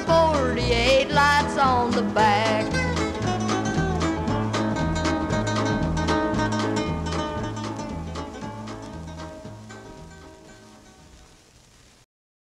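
Country band playing the instrumental close of a hillbilly song, with a guitar lead bending its notes over a steady bass beat. It fades out gradually over the second half, reaching near silence at the end.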